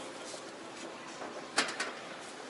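A suitcase set down on a baggage scale's platform: a sharp knock about one and a half seconds in, then a lighter knock, over steady background noise.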